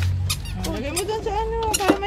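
A high wordless voice holding a drawn-out vocal sound that rises in pitch, holds for about a second and falls away, with a sharp click near the end.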